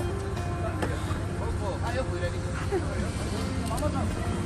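Coach bus engine idling with a steady low hum, under background music and indistinct voices.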